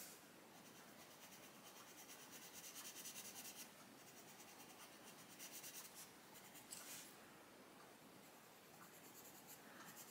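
Faint scratching of a Derwent Lightfast coloured pencil on paper, shading in quick repeated strokes to lay down a thin layer of colour.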